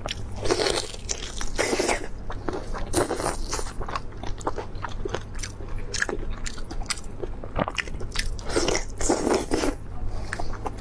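Close-miked biting and chewing of raw marinated prawns: many short wet clicks and smacks, with several louder, longer wet mouth noises as chunks of prawn are bitten off, over a steady low hum.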